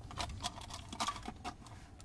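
Light clicks and taps, about eight of them over the first second and a half, as a Rolls-Royce's cigarette lighter is handled and pulled from its socket in the centre console.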